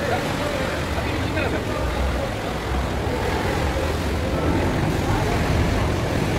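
Motorboat engine running with a steady low rumble, with faint voices in the background.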